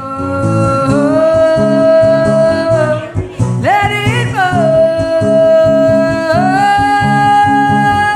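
A woman singing long held notes, with a quick upward swoop in pitch about three and a half seconds in, over a strummed acoustic guitar.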